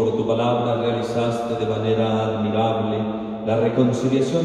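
A priest chanting a prayer of the Mass in Spanish on a nearly single reciting tone, in a man's voice held in long, level notes.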